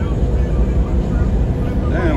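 Steady low rumble of a vehicle on the move, heard from inside the cab: engine and road noise.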